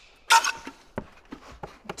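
Handling noise from a rubber hydraulic hose being pulled out of a Styrofoam packing box: a short loud rustle about a third of a second in, then scattered light knocks and rubbing.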